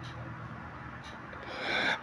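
A pause in a man's speech: a faint, steady background hiss, then a soft breathy noise rising over the last half second, like an inhale before he speaks again.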